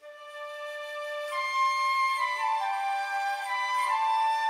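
Background music starting suddenly at the very beginning: a slow melody of held notes, with a flute-like lead, over sustained accompanying tones.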